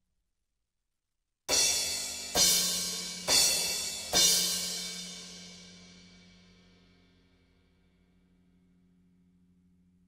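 Drum kit played in four loud accents about a second apart, each a crash cymbal struck together with the drums. The cymbals ring out and fade over a few seconds, and a low drum resonance hums on beneath. The cymbals are fitted with Cympad pads, meant to cut the low-mid boom carried through the stands to the toms and snare, and the kit is heard with all microphones open and no EQ or effects.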